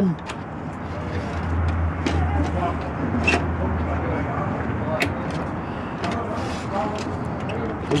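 Low engine hum and road noise of a passing vehicle, strongest in the first half, with a few light metal clicks as the globe base of a Dietz Acme Inspector kerosene lantern is hooked into place.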